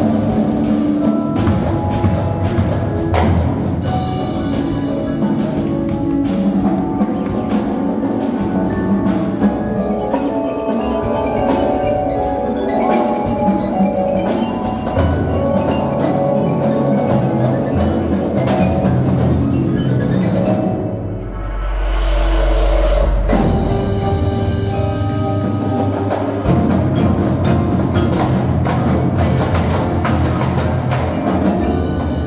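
High-school winter drumline playing its show: marimbas and other mallet keyboards carry the melody over snare, tenor and bass drums. About twenty seconds in the music briefly thins, then a deep low swell with a noisy wash above it lasts about two seconds before the full ensemble comes back in.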